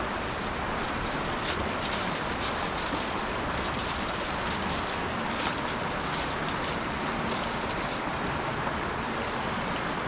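Aluminium foil crinkling and rustling as it is handled and opened out, over a steady rushing background noise.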